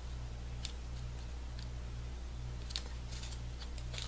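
Faint rustling and a few light taps of paper petals being handled and pressed into place, over a steady low hum.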